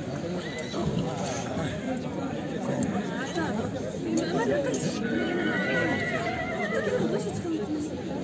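A horse whinnying amid the chatter of men's voices.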